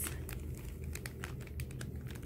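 Clear plastic packaging of crochet hair being handled, giving scattered light ticks and crinkles over a low steady hum.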